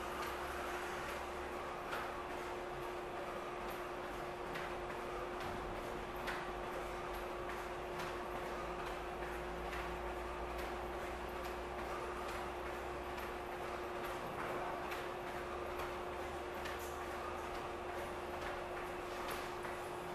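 Sneakers landing on a wooden floor during jumping jacks: a long rhythmic run of light ticks and taps, over a steady hum.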